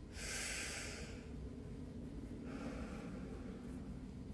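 A man breathing deeply through the mouth during a breathing exercise. There is a strong, airy breath in the first second and a softer breath about two and a half seconds in.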